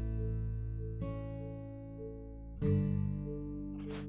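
Background music of acoustic guitar chords, a new chord struck about every one and a half seconds and ringing out between.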